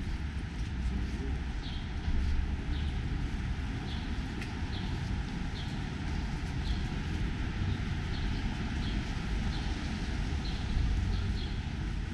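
City street ambience: a steady low traffic rumble, with short high-pitched ticks recurring about once or twice a second.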